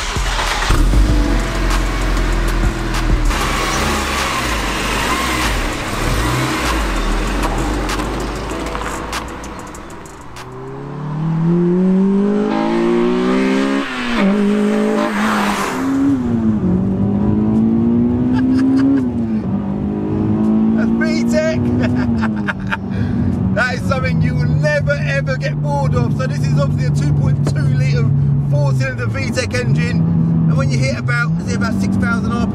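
Honda Integra's engine heard from inside the cabin, pulling up through the revs with a rising note from about ten seconds in and dropping back at the gear changes, then holding a steady note at cruise. It is a light car with little sound deadening, so the cabin is quite loud.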